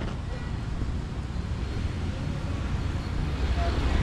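Roadside traffic noise on a town street: motor vehicles running past with a steady low rumble that grows somewhat louder near the end as one comes closer.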